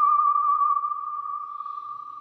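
Film trailer music ending on a single held high note with a slight waver, fading away about halfway through as the lower accompanying notes drop out.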